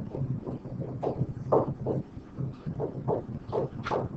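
Stylus tapping and scratching on a pen tablet as words are handwritten. It makes a series of short, irregular strokes over a low steady hum, with one sharper stroke near the end.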